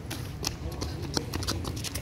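Running footsteps on paved ground: quick, irregular slaps and scuffs, several a second, over a low rumble.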